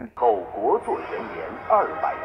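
Spoken voice-over narration in Mandarin from the drama's opening, the voice gliding up and down in pitch.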